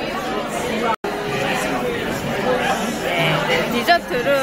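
Chatter of many voices talking at once in a busy restaurant dining room, steady throughout, with a brief drop to silence about a second in.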